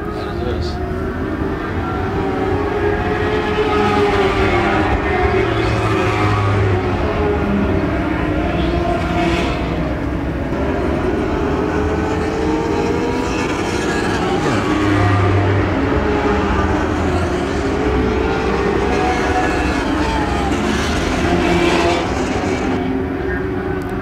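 A pack of Lightning sprint cars, mini sprint cars with motorcycle engines, racing on a dirt oval. The engines run loud and steady, their pitch rising and falling in long sweeps as the cars work the turns and straights.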